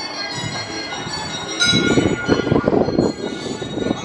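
Carousel music of ringing, bell-like chimes holding many steady tones, growing brighter about one and a half seconds in, with a rough lower noise under it from then on.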